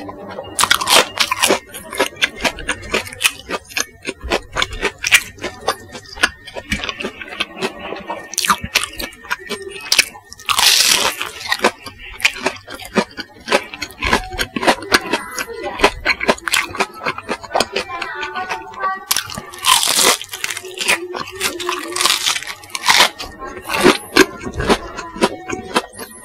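Close-miked chewing of crispy bubble-crumb-coated chicken nuggets: a steady run of crunches and wet mouth sounds, with a few louder, longer crunches about a second in, near the middle, and twice near the end.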